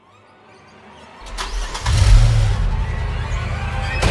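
A deep, rumbling sound-design swell for a horror teaser. It builds out of silence, then turns loud and heavy about two seconds in, with a few sharp scrapes on top.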